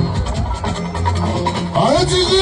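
Live fuji band playing: sustained bass guitar notes under percussion and electric guitar lines. Near the end a singer's voice slides upward into song.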